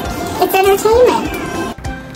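A woman's high, wordless voice sliding up and down in pitch, then music with steady held notes starting near the end.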